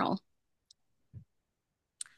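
A woman's voice finishing a sentence, then a pause of near silence broken only by a faint click about two-thirds of a second in and a soft low sound just past a second.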